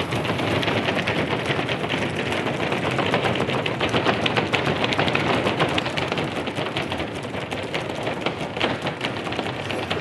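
Studio audience applauding: many hands clapping at once, swelling about halfway through and easing slightly toward the end.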